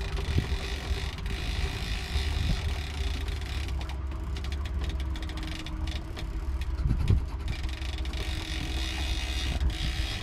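A small sailboat's inboard engine running steadily under way at low revs: a low rumble with a steady hum over it.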